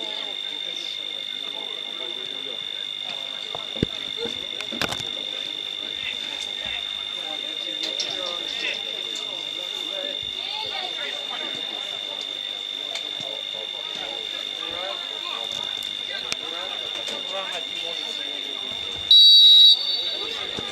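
Players' voices call across a football pitch over a steady high-pitched whine. Near the end a referee's whistle gives one short, loud blast, the signal to take the free kick.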